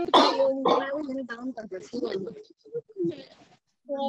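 Indistinct voice sounds and throat clearing coming through a video call, unintelligible and interrupting the talk.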